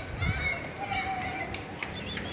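Children's voices in the background, talking and calling out, with a couple of light clicks near the end.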